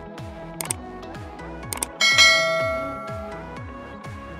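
Background music with a steady beat about twice a second, with two quick pairs of clicks and then a bright bell ding about two seconds in that rings out and fades, the loudest sound: a subscribe-button animation sound effect.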